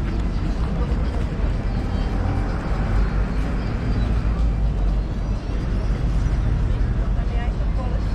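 Outdoor pedestrian-area ambience: voices of passers-by talking over a steady low rumble.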